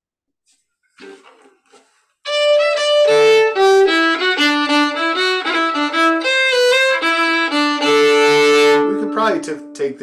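Solo fiddle playing a short phrase of a tune: a run of separate bowed notes starting about two seconds in and ending on a longer held note near the end.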